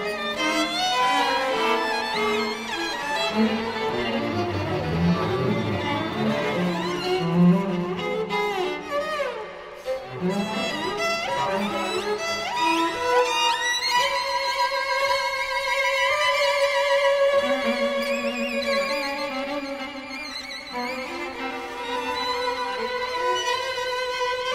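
String trio of violin, viola and cello playing a contemporary classical piece. The first half is busy, with low cello notes and sliding pitches; from about halfway the instruments settle into long held high notes.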